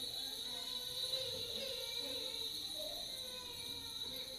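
Faint, indistinct voices and movement of people in a large room, with a steady high-pitched tone underneath.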